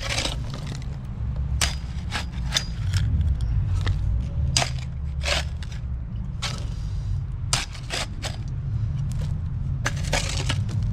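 Metal shovel digging into a heap of stony soil and throwing the earth into a hole, a sharp scrape or crunch about every second, over a steady low rumble.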